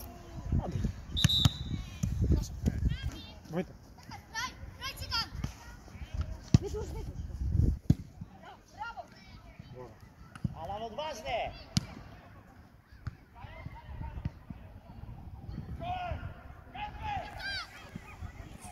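Outdoor football ambience: scattered distant shouts and calls from players and spectators, with a few sharp thuds of the ball being kicked, over a low rumble of wind on the microphone.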